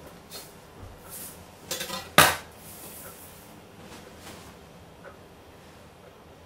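A kitchen knife knocking lightly on a cutting board as a chocolate garnish is broken into pieces: a few soft clicks, with one sharp click about two seconds in.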